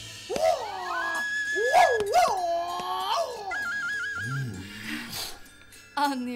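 A run of dog-like whining howls over about three seconds, each swooping up and down in pitch. A short warbling electronic tone and a low sliding tone follow.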